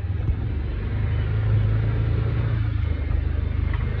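Can-Am side-by-side UTV engine running, a steady low drone heard from the driver's seat, a little stronger through the middle.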